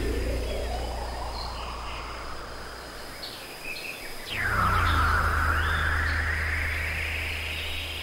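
Electronic acid/trance music: a synthesizer pitch glide rising slowly over a sustained low bass drone. Just before four seconds the drone drops out briefly, then returns under a second sweep that swoops down sharply and climbs again, with faint short chirps above.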